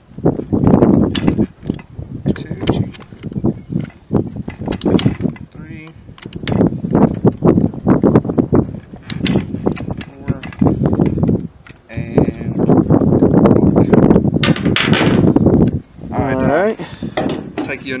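Wind buffeting the microphone in strong low gusts, with scattered sharp clicks and knocks of a hand tool working on the rifle as its barrel is torqued back in.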